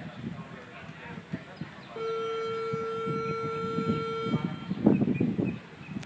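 A single steady, buzzy horn tone at one pitch, lasting a little over two seconds and starting about two seconds in, over low outdoor background noise.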